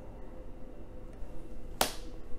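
A single sharp snap about two seconds in as a trading card is laid down onto a stack of cards on the table.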